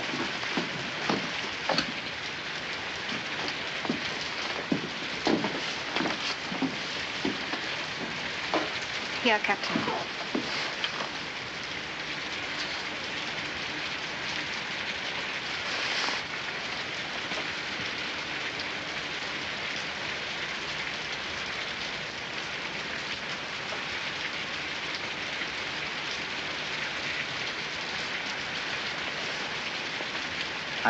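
Steady heavy rain falling, an even hiss with a few sharp knocks in the first ten seconds and a brief voice about nine seconds in.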